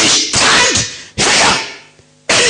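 A preacher shouting into a handheld microphone in three short, loud bursts that start suddenly, the voice harsh and distorted through the amplification.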